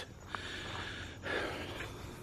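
A trail runner's hard breathing while running, two long noisy breaths.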